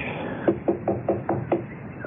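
Radio-drama sound effect of knuckles knocking on a wooden front door: about six quick raps in short clusters, coming just after a footstep.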